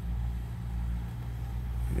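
Steady low hum of an idling engine.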